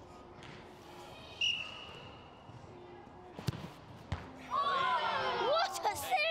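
A penalty kick: a football struck hard about three and a half seconds in, with a second knock just after, then a group of young children shouting and cheering excitedly as the penalty goes in.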